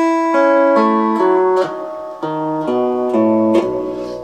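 Electric twin-neck steel guitar in B11 tuning, each string plucked in turn from the highest down, sounding out the tuning E, C♯, A, F♯, D♯, B, A, B. Each note rings on under the next, one new note about every half second.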